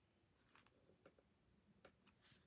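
Near silence with a few faint light ticks: a clear acrylic stamp block handled and pressed onto scrap paper.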